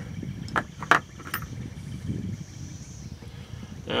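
Three sharp clicks from handling at a rifle shooting bench, the loudest about a second in, over a steady low rumble.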